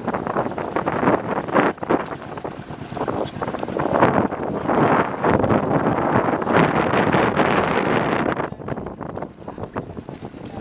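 Wind buffeting the microphone on an outrigger boat crossing choppy sea, rising and falling in gusts and easing a little near the end.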